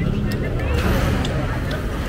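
Busy restaurant din: background chatter over a steady low rumble, with a few light clicks like a metal spoon against a ceramic bowl.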